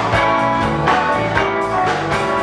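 Live blues band playing: electric guitar over bass and drum kit, with a steady beat.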